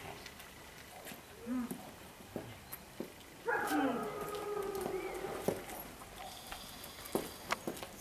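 A dog whining: one drawn-out, wavering call about three and a half seconds in, lasting about two seconds, with a shorter faint one before it, amid a few soft clicks.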